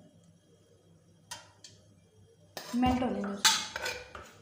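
Kitchen utensils clinking against dishes: a couple of light clinks, then a louder clatter of metal and crockery near the end.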